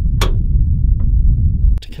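Wind buffeting the microphone: a loud, uneven low rumble, with a short sharp click about a quarter second in. The rumble cuts off suddenly near the end.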